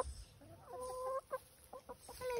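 Domestic hen calling: one drawn-out call of about half a second, then a few short clucks.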